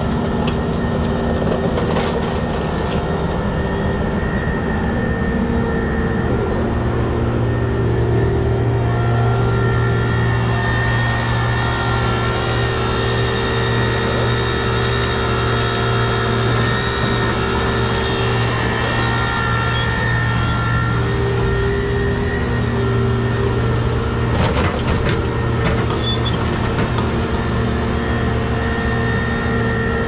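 Heavy scrap-handling machinery, a hydraulic material handler working a grapple over a scrap shear, running steadily: a diesel engine drone with a hydraulic pump whine on top that grows louder and fuller about eight seconds in as the machine works under load. A few short clanks of scrap metal come through, one near the start and another a little before the end.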